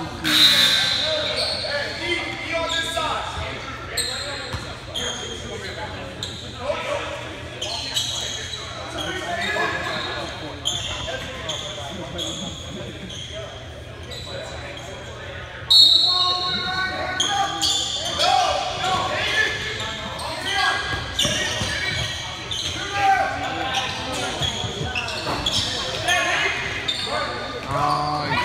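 Basketball game sounds on a hardwood gym court: a ball bouncing, with many short sharp impacts, under the voices of players and spectators. It all echoes in a large gymnasium, and gets suddenly louder a little past halfway.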